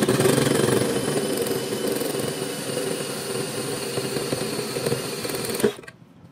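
Cordless drill driving a hole saw through the sheet-steel top of an electrical enclosure, a steady cutting run that stops suddenly near the end.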